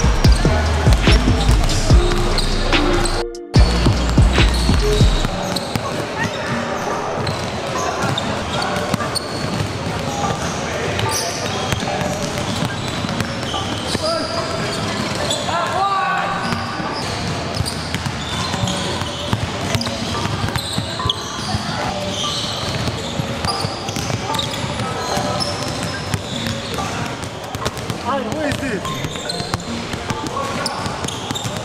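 Background music with a heavy bass beat that drops out for a moment about three seconds in and ends about five seconds in. After that, the live sound of a busy indoor basketball court: many basketballs bouncing on a wooden floor amid indistinct chatter of players.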